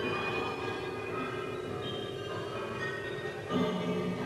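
Electronic music made of many overlapping held synthesizer tones at different pitches, each starting and stopping while others sound on. A louder low tone comes in near the end.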